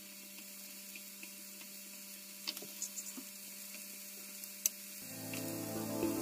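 Light taps and clicks as pepper strips and a knife touch a non-stick frying pan, over a steady low hum. Background music comes in about five seconds in.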